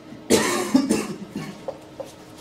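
A person coughing, a few harsh coughs in quick succession.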